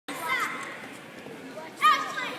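Girls' voices in a crowd, with high-pitched shouts rising above the chatter: one soon after the start and a louder one near the end.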